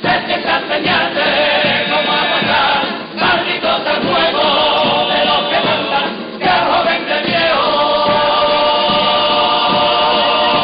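A Cádiz-style carnival comparsa, a large choir, singing in several-part harmony with Spanish guitar accompaniment. The singing breaks briefly about three seconds in and again about six seconds in, then settles into long held chords near the end.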